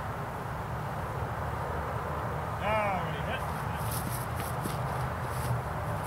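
Open-air field ambience with a steady low rumble, like wind on the microphone. A short voiced shout comes about three seconds in.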